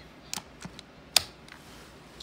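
Handling noise: a couple of soft clicks, then one sharp click a little after a second in, over quiet room tone.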